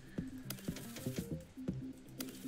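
Online slot game's electronic reel-spin sound: a quick, fairly quiet run of short clicks and brief notes, about five a second, as the reels spin and stop.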